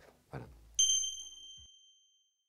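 A single bright ding of an outro logo sting, struck sharply about a second in and ringing out as it fades.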